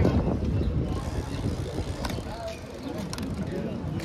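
Steady low rumble of wind on the microphone and tyre noise from a bicycle rolling along a city street, with faint voices of people around.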